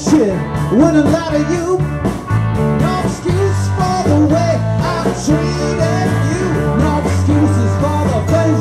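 Live rock band playing: electric guitars, bass, drums and keyboard, with a lead line bending up and down in pitch over the top. The frontman plays it on a harmonica cupped against the vocal mic.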